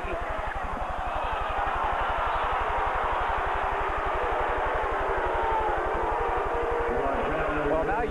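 Basketball arena crowd cheering and shouting, a dense din of many voices that gets louder about a second and a half in. A steady low buzz runs underneath.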